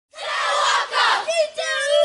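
A Māori kapa haka group of young performers chanting in unison. Shouted phrases open it, and about one and a half seconds in they take up a long held call.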